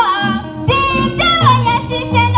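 A choir singing a melody with sliding notes, over an even beat of shaken percussion.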